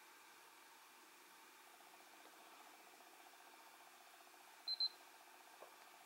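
Two quick high-pitched beeps from a RunCam Split FPV/HD camera a little before the end, confirming a mode change made from its phone app, with a faint click just after. Otherwise near-silent room tone.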